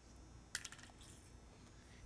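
Near silence with a few faint clicks about half a second in, from plastic furniture slides and a furniture lifter being handled.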